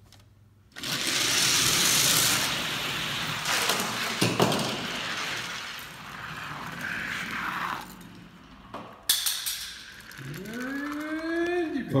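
Die-cast toy cars let go from a starting gate and rolling down a long plastic track: a loud, steady rolling rattle that starts suddenly about a second in and lasts about seven seconds, with one sharp clack about four seconds in.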